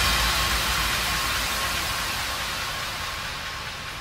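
A wash of white-noise hiss in a drum and bass mix, with no beat, fading steadily. A low bass tone under it dies away in the first second or so.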